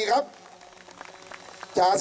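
Faint scattered applause, a light crackle of many hands clapping between announcements over a PA system.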